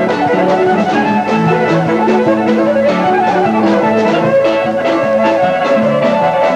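Live ceilidh band playing a dance tune on fiddles, piano, guitars, bass and drums, with a steady beat.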